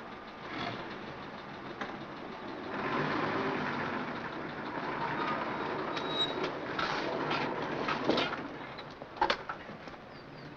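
Old motor vehicles manoeuvring: engine and road noise swelling about three seconds in and fading after eight seconds, with a few light clicks. A sharp knock comes near the end.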